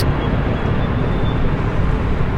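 Steady low rumble of boat traffic on the water: a motorboat's engine drone mixed with water noise.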